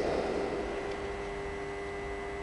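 Steady hum and hiss of room tone with a few steady tones, as the echo of a voice in the large church dies away over the first half second.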